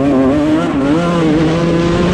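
125cc two-stroke motocross bike engine held at high revs under acceleration, its pitch wavering, dipping and then climbing again about a second in.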